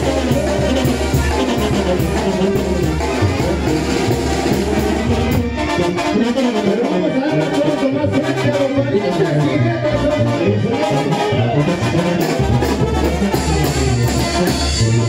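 Mexican banda-style brass band music with trumpets and trombones, playing loudly; its low beat drops out for a few seconds in the middle and then comes back.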